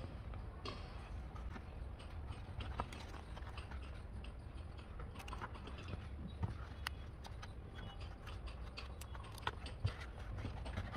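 Fresh banana leaf being folded and handled by hand, giving scattered small clicks and crackles over a low steady rumble.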